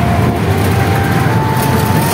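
Auto rickshaw engine running loudly with a steady low chugging and road noise, heard from inside the open passenger cabin while riding.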